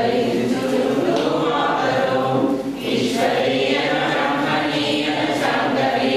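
A group of voices singing together in a sustained chorus, with a brief break in the line a little before halfway.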